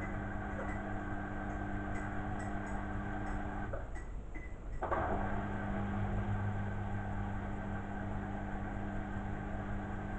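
Beko front-loading washing machine running with a steady motor hum. The hum stops for about a second a little under four seconds in, then starts again, as the drum pauses between turns of the wash tumble.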